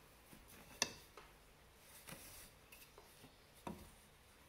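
A few light clicks and taps from fingers handling the warp threads of a rigid heddle loom, the sharpest about a second in and another near the end.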